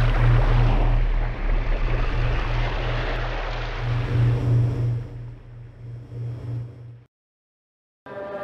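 Submarine sound effect: a deep engine hum with a low throb pulsing a few times a second under rushing, gurgling water. It fades down and cuts off to silence about seven seconds in.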